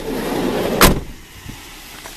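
A 2000 Chevrolet Venture minivan's sliding side door rolls shut along its track and closes with one loud bang a little under a second in.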